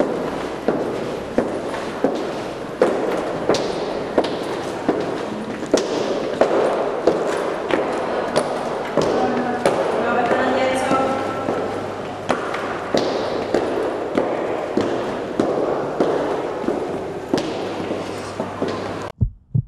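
Footsteps of hard-soled shoes on a hard floor and stairs, a steady walking pace of about three sharp clicks every two seconds, over a murmur of voices.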